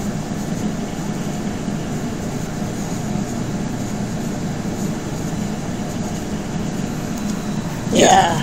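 Steady low background hum, even and unchanging, like an air conditioner or other running machine in the room.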